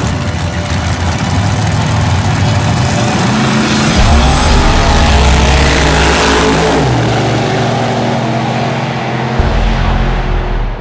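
Two drag cars' engines running at the starting line, then launching about four seconds in and accelerating hard down the track, their pitch rising.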